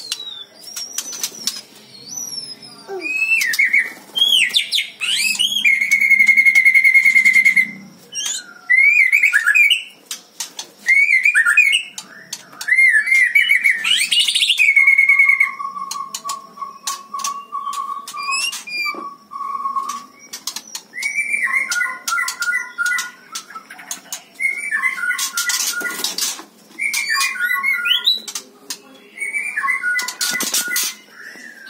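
Caged white-rumped shama singing a loud, varied song of whistles, slurred rising and falling notes and trills, with a held high whistle about six seconds in and a long steady lower note around the middle. Sharp clicks run through the song, and two loud rustling bursts come near the end.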